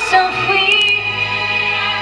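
Live pop ballad: female vocals over band accompaniment of sustained keyboard chords, with a few light cymbal ticks about halfway through, heard from the audience in a concert hall.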